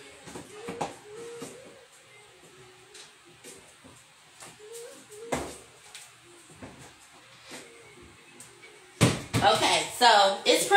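Scattered faint knocks and clicks of cupboards and seasoning containers being handled in a kitchen, the sharpest knock about halfway through, over faint background music. About a second before the end, a woman's voice comes in loud and close.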